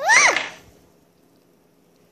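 A child's short, high-pitched squeal that sweeps up steeply and drops again, lasting under half a second at the very start.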